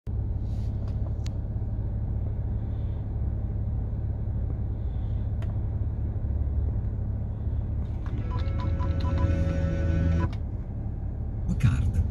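Steady low rumble of an idling car engine heard inside the cabin, with a few light clicks. About eight seconds in, roughly two seconds of tones and short beeps play from the car's Android head unit speakers, then cut off.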